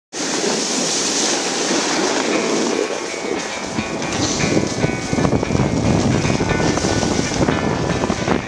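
Snowboard sliding and scraping over groomed snow on a fast run, with wind buffeting the microphone; the rumble of the board on the snow grows heavier about halfway through. Music plays faintly underneath.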